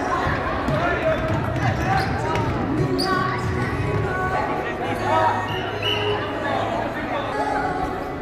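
A basketball bouncing on a hardwood gym floor during play, with spectators' voices around it.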